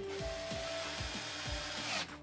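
Cordless drill driving a stainless steel screw into plywood, the motor running steadily and stopping suddenly near the end as the screw seats flush.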